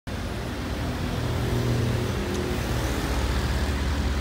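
A motor vehicle engine running steadily nearby, a low even hum over street noise.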